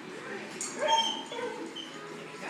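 Yorkshire terrier giving short, high yips and whines, loudest about a second in.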